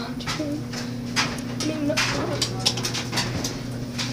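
A puppy whimpering in a few short, wavering high-pitched whines, over a steady low hum and a run of sharp clicks and knocks.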